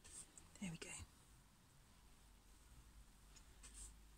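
Near silence, broken by a brief faint muttered voice in the first second and faint scratching of a paintbrush dabbing paint onto the board near the end.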